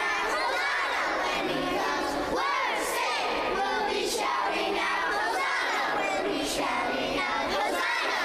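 A group of children shouting and cheering together, many voices overlapping at a steady level.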